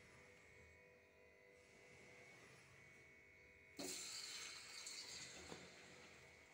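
Faint hum, then about four seconds in a sudden hiss of sizzling that slowly dies down, as of a batter-coated piece of food going into hot oil.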